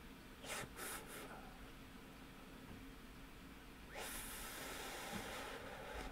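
A person breathing out: a soft hiss lasting about two seconds, starting about four seconds in, after a few faint clicks near the start.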